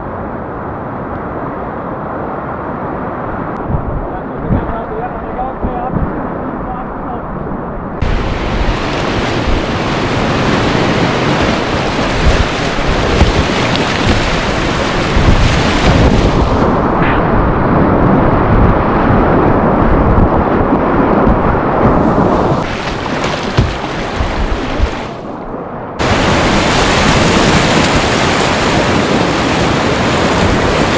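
Whitewater rapid rushing and splashing around a kayak, close on the boat's camera microphone, with paddle strokes in the water; the rushing turns brighter and duller abruptly several times.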